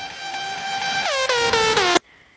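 Air horn sound effect: a held blast that swells in loudness, then a rapid run of short blasts that each sag in pitch, cut off suddenly at the end.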